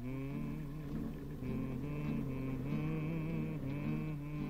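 Music: a slow melody of held notes with a reedy, wavering tone, over lower sustained notes.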